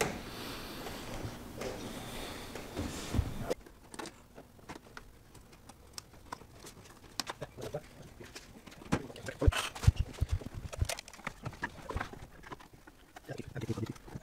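Clicks and knocks of hands working a car's plastic interior trim and seat-belt hardware, thickest about nine to eleven seconds in. A steady background noise fills the first few seconds and cuts off suddenly.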